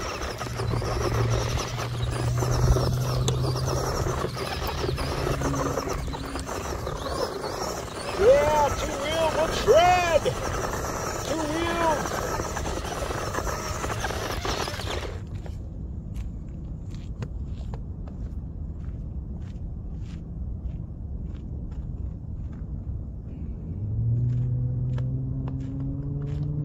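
Small RC truck's electric motor whining and its tyres churning loose dirt and gravel, with swooping rises and falls in pitch as it is throttled, running on only two of its wheels. About fifteen seconds in it stops suddenly, leaving a quieter stretch of small crunches and clicks, and a rising whine starts near the end.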